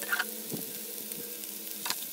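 Pork pieces and sliced mushrooms sizzling in a nonstick frying pan, with a few short scrapes of a wooden spatula stirring them, one near the start and one near the end.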